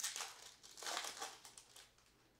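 Foil wrapper of a baseball card pack being torn open and crinkled as the cards are pulled out, in two bursts: one at the start and a longer one about a second in.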